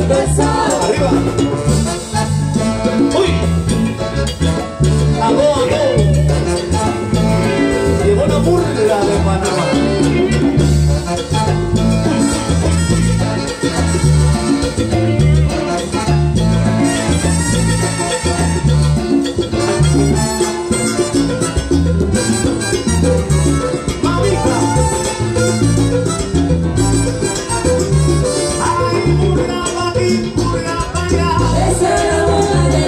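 Salsa orchestra playing live: a full band with a steady bass pulse and Latin percussion, in a stretch without lyrics.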